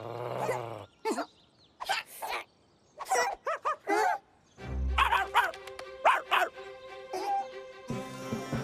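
A cartoon pug's voice effects: a low growl, then a run of short barks and yips. A music cue with a deep bass comes in about halfway through.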